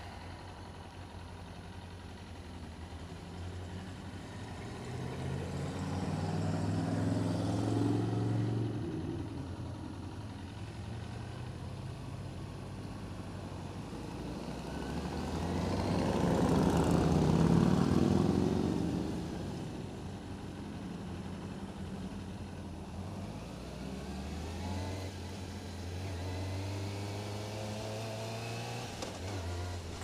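Sport motorcycle engine running at low speed in town traffic, its pitch rising as it pulls away a couple of times. A louder engine swells and fades about halfway through as other motorcycles pass.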